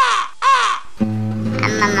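A crow cawing twice, two short calls about half a second apart; about a second in, music with a singing voice starts.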